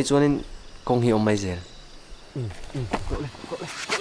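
People's voices: two loud drawn-out calls in the first second and a half, then a quick run of short falling vocal sounds, over faintly chirping crickets.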